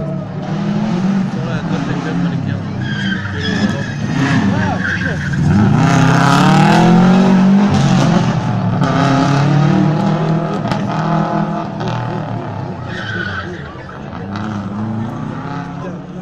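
Rally car engine revving hard, its pitch rising and falling with throttle and gear changes, growing loudest about six to eight seconds in as the car comes past and then fading.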